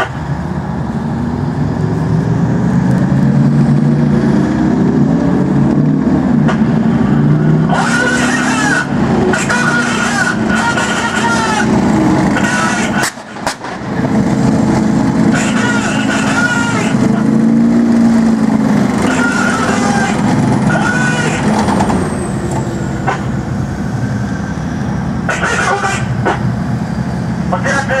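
Japanese Type 90 and Type 74 main battle tanks driving on a dirt ground, their diesel engines running with rising and falling revs as they manoeuvre. A falling high whine comes about three quarters of the way through.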